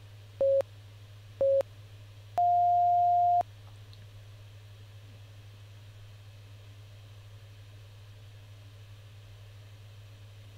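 Interval timer countdown beeps: two short beeps about a second apart, then a longer, higher beep marking the start of the work interval. After it only a steady low hum remains.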